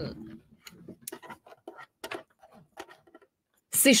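A run of small, irregular plastic clicks and knocks from a Brother domestic sewing machine being handled and set back down, around the lever that lowers and raises its feed dogs.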